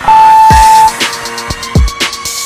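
A workout interval timer's long, high beep lasting almost a second as the countdown ends, marking the end of the exercise, over electronic background music with a steady beat.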